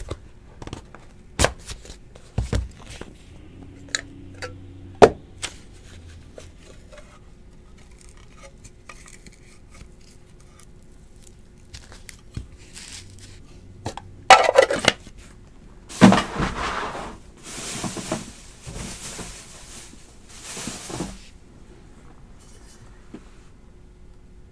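Trading card box and hard plastic card cases handled on a table: a few sharp clicks and knocks, then several seconds of sliding and scraping as the pieces are moved and stacked.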